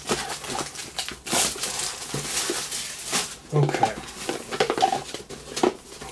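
Cardboard trading-card box being opened and handled: irregular rustling and scraping of card, with a longer sliding scrape about a second in.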